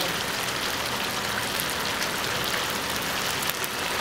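Chicken pieces sizzling and bubbling in oil and their own juices in a pan on the stove: a steady hiss with fine crackles.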